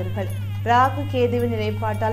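A woman speaking Tamil, with one louder high-pitched syllable a little under a second in, over a steady low hum.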